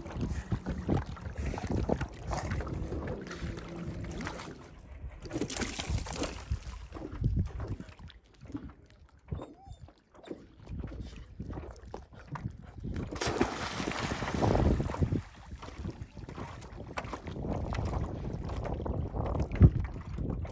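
Lake water lapping and splashing at a rocky shoreline, with wind on the microphone. The noise grows louder for a moment about six seconds in and again for a couple of seconds past the middle, then eases off.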